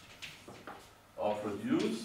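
Chalk being written on a blackboard, heard as short, sharp taps and strokes. A little past halfway, a person's voice makes a brief sound that rises in pitch; it is the loudest thing here.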